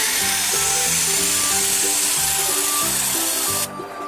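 Loud steady hiss of a hand-pump pressure sprayer discharging through its nozzle into a water balloon as the balloon swells. The hiss cuts off suddenly near the end. Background music plays underneath.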